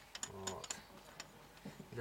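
A few light clicks from a bottle jack's threaded extension screw being turned out by hand, mostly in the first second. There is a short voice sound about half a second in.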